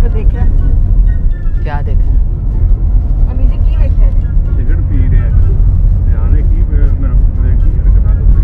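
Steady low road and engine rumble heard from inside a moving car's cabin, with voices talking over it.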